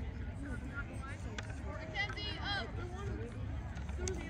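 Distant voices of several people talking and calling out, too faint to make out words, over a steady low rumble of wind on the microphone.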